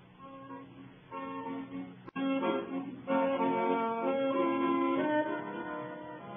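An accordion playing a tune in held chords on an old, narrow-band radio recording. It is quiet at first and grows louder after a sharp click about two seconds in.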